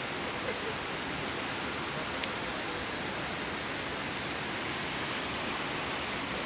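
Steady rushing of a wide, silt-grey river flowing over a gravel bed, an even noise that holds level throughout.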